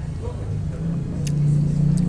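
A motor vehicle's engine running, a low pulsing hum that grows steadily louder.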